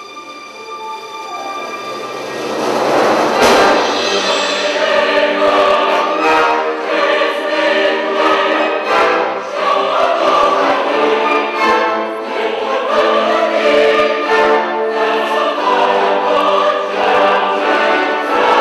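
Large mixed choir singing with a full symphony orchestra. The music swells from soft to full volume over the first three seconds, with a sharp crash about three and a half seconds in, then stays loud.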